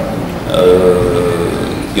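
A man's voice holding a long, level hesitation sound, 'euh', for over a second in the middle of a spoken sentence.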